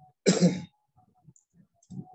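A single short cough from a person, about a quarter of a second in and lasting about half a second.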